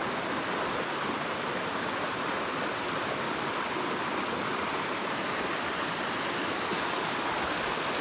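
Rushing water of a rocky stream pouring over and between boulders, a steady, even hiss.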